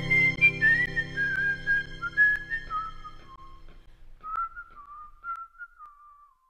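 A tune whistled over soft background music. The music fades away in the first half, leaving the whistled melody alone with a couple of light clicks. The melody drifts gradually lower in pitch and trails off at the very end.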